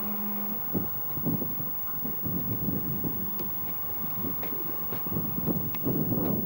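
A Talgo train hauled by a RENFE Series 353 diesel-hydraulic locomotive approaching, its wheels knocking unevenly over rail joints and points. A steady low hum fades out about half a second in, and the knocks grow louder toward the end as the train nears.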